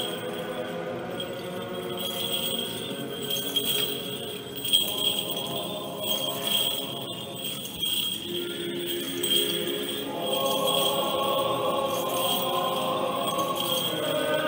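Choir singing Orthodox liturgical chant, thinning out in the middle and swelling again about ten seconds in. Over it, the small bells of a swung censer jingle in a regular rhythm about once a second.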